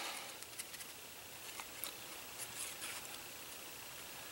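Faint scratching and a few light ticks of a white fine-tip Sharpie marker drawing on black cardstock.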